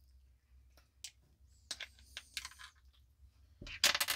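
A coin turning in the slot of a small plastic battery cover, making faint scattered clicks and scrapes as the cover is twisted loose. Near the end there is a louder, brief scraping clatter as the cover comes free.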